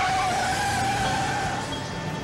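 A sedan's tires squealing as it spins its wheels pulling away hard. It is one steady, high squeal that fades out about a second and a half in.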